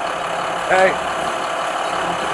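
Heavy truck engines idling steadily, with a man's short shout of "Hey!" about a second in.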